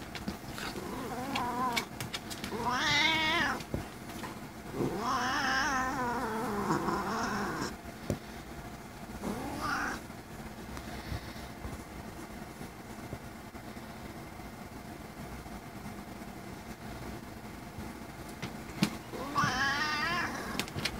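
Domestic tuxedo cat making a series of drawn-out, wavering meows: four in the first half, the longest about three seconds, then a lull before another begins near the end. These are her habitual chatty noises, not a sign of distress.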